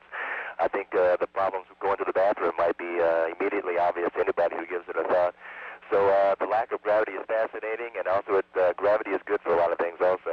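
A man speaking continuously over a narrow-band space-to-ground radio link, with a faint steady hum underneath.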